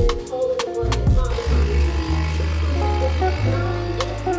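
Background music with a steady bass line and drum beat; from about a second in, the pump of a capsule espresso machine buzzes underneath it as the coffee brews.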